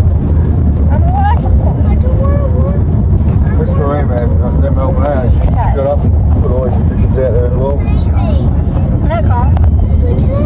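Steady low rumble of a car heard from inside its cabin, under voices and music.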